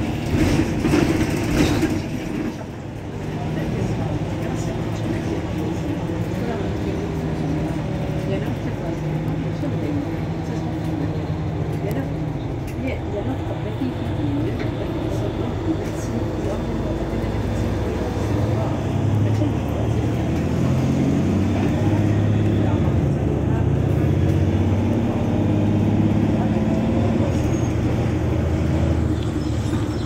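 Mercedes-Benz Citaro C2 city bus engine idling at a stop, a steady low running sound that grows a little louder about two-thirds of the way through, with faint voices around it.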